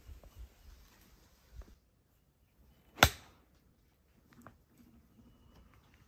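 A 58-degree golf wedge striking the ball: one sharp, crisp crack about three seconds in.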